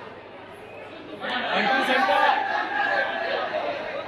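Crowd chatter: many voices talking over one another, swelling louder about a second in.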